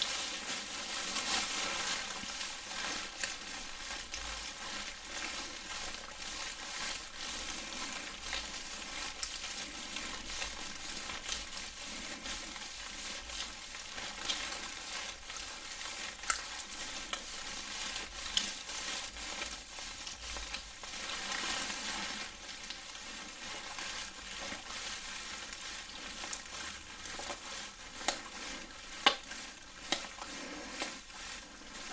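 Gloved hands making wet, slick rubbing sounds close to the microphone in a mimed neck and shoulder massage. It is a continuous rubbing hiss with scattered small clicks, the sharpest just before the end.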